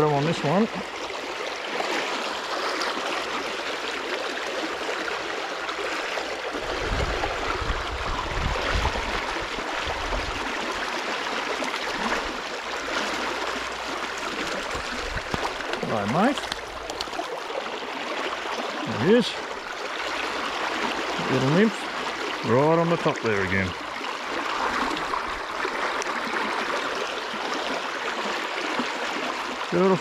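Shallow river rushing steadily over a stony riffle. A few short voice exclamations come in the second half, and there is a brief low rumble about a quarter of the way in.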